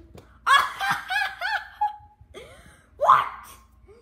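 A person laughing, a quick run of short bursts that rise and fall in pitch, then another loud outburst about three seconds in.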